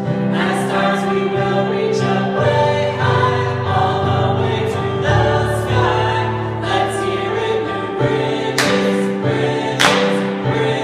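A small group of adults singing a school song together over instrumental accompaniment, with sharp hand-clap hits near the end.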